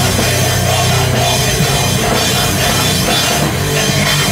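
Rock band playing live and loud, with drum kit and electric guitar.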